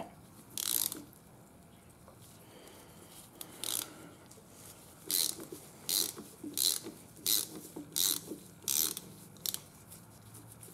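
Hand ratchet clicking in short bursts on its return strokes as it turns a slit steel fitting down into damaged pipe threads in a hydraulic floor jack's base, using the fitting as a makeshift tap; the threads are tight and the fitting is turning under pretty good pressure. A couple of single bursts come first, then a regular run of about one every 0.7 s from about five seconds in.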